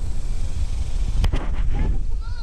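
Low, uneven rumble of wind buffeting the camera microphone, with two sharp knocks close together a little past a second in.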